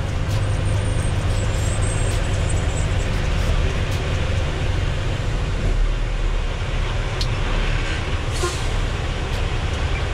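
Diesel engine of a Western Star tri-axle dump truck running steadily at low speed, heard from inside the cab as a deep, even rumble, with a few faint clicks.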